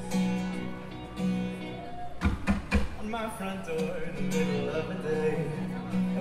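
Live band playing a slow passage: a held chord on electric guitars, a short cluster of drum hits a little over two seconds in, then a sung line over the guitars.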